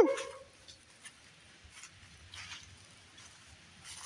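A man's loud whooping "woo" call, rising sharply in pitch, cuts off right at the start and echoes briefly through the woods. Then quiet woods with a few faint, brief distant sounds while he listens for an answering holler.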